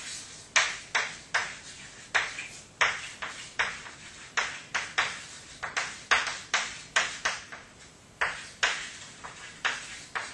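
Chalk writing on a blackboard: a run of short chalk strokes and taps, roughly two a second at an uneven pace, each starting sharply and fading quickly.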